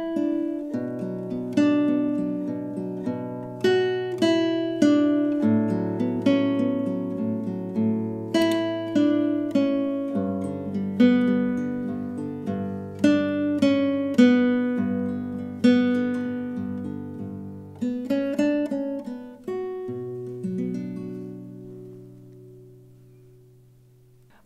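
Nylon-string classical guitar fingerpicked at a slow tempo: an arpeggio pattern over Bm, A6/9 and G chords, with a three-note melody on the treble strings accented by rest strokes of the ring finger. The last chord rings out and fades near the end.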